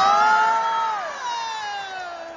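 A man singing one long, high note in Chinese opera style, held steady and then sliding down in pitch through the second half.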